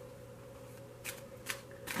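Tarot cards being handled: three short, faint rustles about half a second apart in the second half, over a low steady hum.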